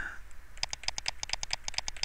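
Fast, evenly spaced light clicking, about eight clicks a second, starting about half a second in, from the computer's input device as quick brush strokes are made.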